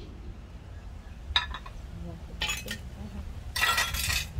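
Metal cookware on a charcoal kettle grill clinking: a sharp clink about a second and a half in, then a louder rattling scrape near the end, over a steady low rumble.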